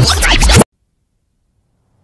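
A loud, scratchy glitch sound effect from a video transition, which cuts off suddenly about half a second in.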